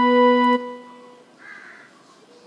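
Casio electronic keyboard holding one steady note that stops abruptly about half a second in, leaving only faint background sound.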